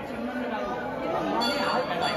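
Several people talking at once: crowd chatter without clear words.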